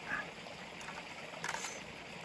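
A few faint clicks and rattles from a telescopic sampling pole being handled and collapsed, its sections and snap-on joint knocking lightly.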